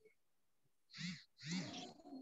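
A man's voice: after about a second of near silence, two short, faint vocal sounds with rising and falling pitch, a hesitant start to speech.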